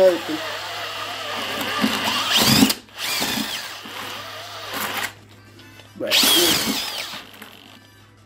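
Electric drill driving a spiral paddle mixer through a dry cement-based patching mix in a plastic bucket. It runs in three bursts, stopping briefly about two and a half seconds in and for about a second around five seconds in.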